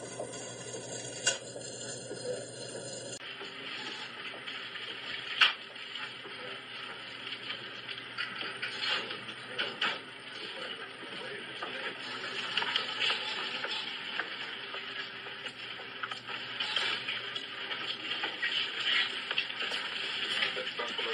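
Store room noise: a steady hiss with scattered small clicks and knocks, one sharp click about five seconds in. The sound changes abruptly about three seconds in.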